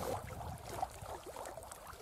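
Quiet open-air background: a low wind rumble with faint, brief bits of distant voices.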